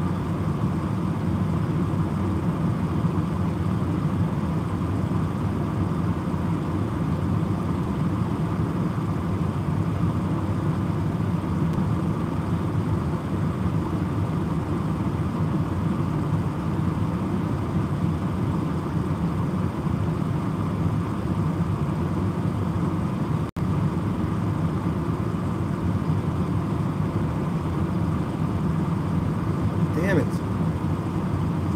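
Steady low road and engine rumble inside a moving car's cabin; the sound cuts out for an instant about two thirds of the way through.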